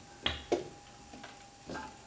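A few light clicks and a dull knock from cookware at the covered pot, over a faint steady high tone.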